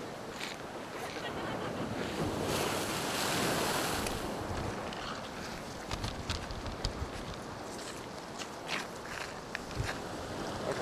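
Storm sea surging and breaking over a seafront promenade, a steady wash of surf with wind on the microphone, swelling to its loudest about three seconds in. From about the middle on, a series of sharp clicks and knocks.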